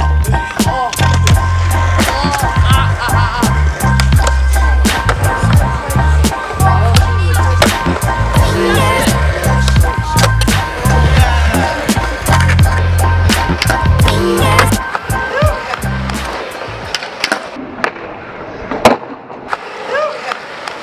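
Music with a heavy bass beat laid over skateboard sounds on concrete: wheels rolling and the sharp clacks of the board popping and landing. About three-quarters of the way through the beat drops out, leaving the skating quieter, with one loud clack near the end.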